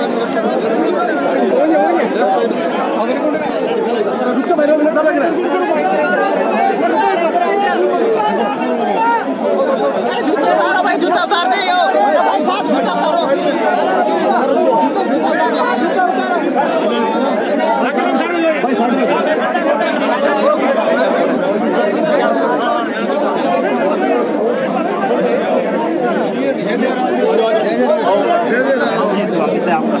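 Crowd chatter: many people talking over one another at once, close around the microphone, with no single voice standing out.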